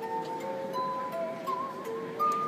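Glass harp: wet fingertips rubbing the rims of water-tuned wine glasses, sounding several clear, steady tones at once, with notes changing in steps and one tone wavering about halfway through.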